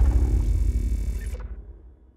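The deep rumbling tail of an intro-style logo sound effect dying away, its hiss cutting off about one and a half seconds in and the rumble fading to silence by the end.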